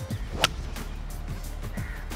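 A single sharp crack of a four-iron striking a golf ball off the turf, about half a second in, over background music with a steady low beat.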